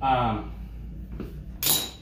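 A man's voice, trailing off with a falling pitch at the start, then a short hiss near the end.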